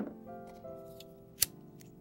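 Soft instrumental music with held keyboard notes, over which scissors snip sharply a few times, the loudest snip about one and a half seconds in.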